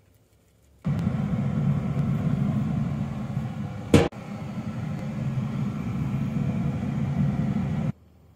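Pellet grill running: a steady low rumble that starts abruptly just under a second in and stops abruptly near the end, with a single sharp knock about four seconds in.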